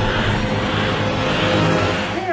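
Intro theme music tailing off under a rising, hissing whoosh sweep, which ends about two seconds in.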